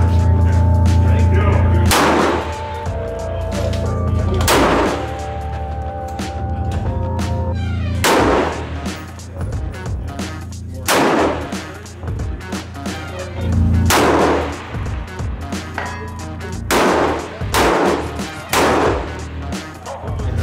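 Scoped bolt-action rifle firing, about seven shots two to three seconds apart, each with a short echo, over background music with a steady bass.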